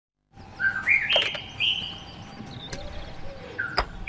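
Birds chirping with short whistled notes that step upward in pitch, over a faint outdoor background, with a few sharp clicks, the last one near the end.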